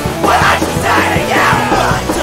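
Punk rock song playing loud, with a shouted vocal over the band.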